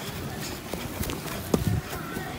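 Bare feet running on grass while dribbling and kicking a football: a few soft thuds, the loudest about one and a half seconds in.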